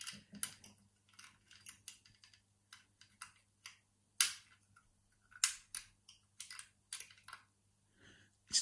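Metal picking tools clicking and scraping against the levers and warding inside a vintage Century four-lever hook-bolt mortice lock as it is picked: quite a bit of noise, in irregular small clicks with a few louder ones, the loudest about four seconds in.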